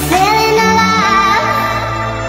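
Sped-up pop song: a female vocal, pitched high by the speed-up, sings a sliding then held line over steady synth and bass backing.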